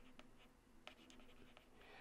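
Near silence, with a few faint taps and light scratches from a stylus writing on a tablet.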